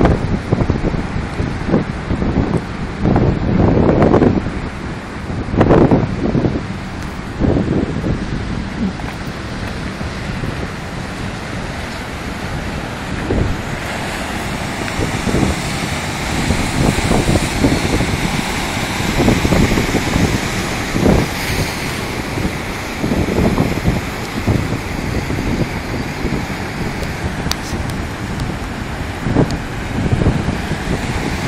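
Wind buffeting the microphone in irregular gusts over the steady wash of breaking surf; the surf's hiss grows fuller about halfway through.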